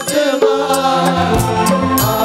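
Devotional bhajan music: a man's voice chanting a held melody into a microphone over a drum beat, with sharp high percussion strikes several times a second.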